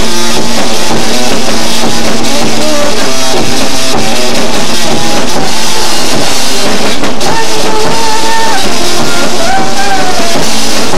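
Live rock band playing loud: electric guitar over a drum kit. A high melodic line stands out over the band in the second half.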